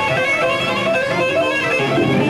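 Live electric guitar playing a quick run of single notes, recorded by a camcorder among the crowd.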